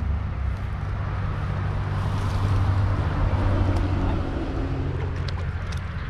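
Steady low rumble with a fainter hiss, as wind blows across an outdoor camera microphone.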